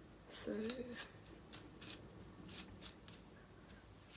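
A round hairbrush pulled through long hair, a series of quick swishes about two or three a second as tangles are brushed out.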